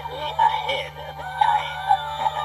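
Built-in sound track of an animated Halloween model building: music with a wavering, voice-like melody, over a steady low hum.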